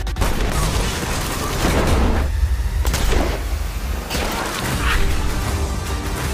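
Trailer battle sound design: several heavy gunshot-like booms spread across a few seconds over a steady, deep bass rumble.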